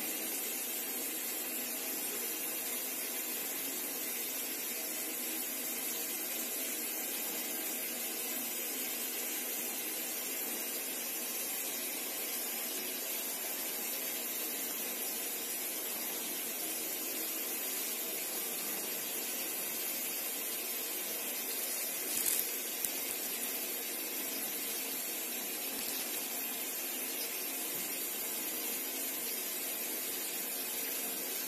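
Steady hiss of background noise with no other sound, except a brief faint bump about twenty-two seconds in.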